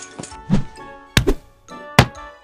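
Cartoon thud effects of children dropping from a chain-link fence and landing on the ground: a soft thud about half a second in, two sharp thuds just after a second, and another at the end, over background music.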